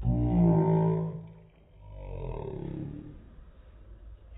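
A man's voice making two long, drawn-out wordless sounds, the first loud and lasting about a second, the second quieter.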